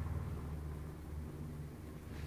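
A steady low hum under faint room noise, fading slightly.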